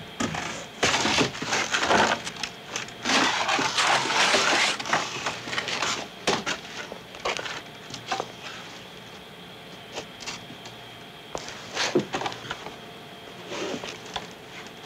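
Foley crash effects: cardboard boxes and wooden debris being smashed and crushed. A dense run of crunching crashes and cracks fills the first half, then sparser knocks, with a few sharp cracks near the end.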